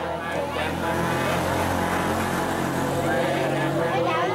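Elderly voices reciting a prayer together, over a low steady rumble like an engine that cuts off at the very end.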